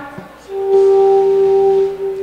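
Electronic keyboard holding one steady organ-like note for about a second and a half, starting about half a second in. It is a level check of the keys in the stage monitors.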